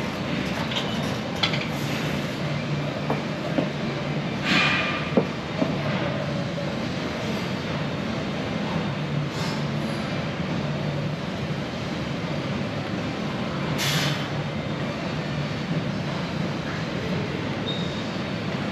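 Steady hum and hiss of a large gym room, with two short hissing breaths about ten seconds apart from a lifter grinding through two reps of a heavy barbell back squat.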